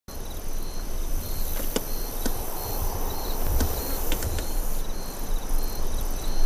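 Insects chirping in a steady pulsing drone over a low rumble, with several sharp taps scattered through it: a weaver bird pecking at a vehicle's side mirror.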